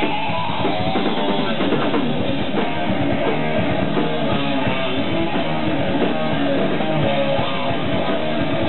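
A heavy metal band playing live, with electric guitar, bass guitar and drum kit going steadily and without a break.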